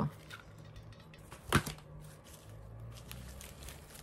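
Hands handling a hot glue gun and a fabric flower, with faint rustling and one sharp click about a second and a half in, over a low steady hum.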